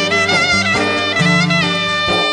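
Instrumental passage of Epirote Greek folk music: a clarinet plays an ornamented lead melody with bending notes, over a violin and steady lower accompaniment.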